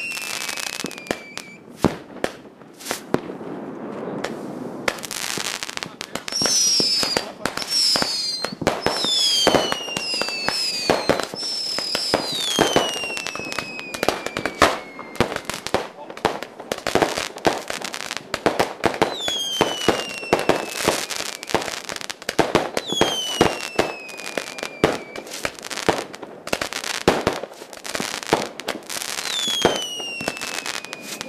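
Fireworks going off in quick succession: a dense string of bangs and crackles, mixed with repeated whistles that each fall in pitch over a second or two, often several overlapping.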